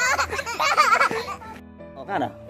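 A small child crying in loud, wavering wails that break off about a second and a half in, over background music.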